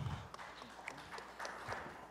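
Faint footsteps and a few light scattered taps over quiet room noise.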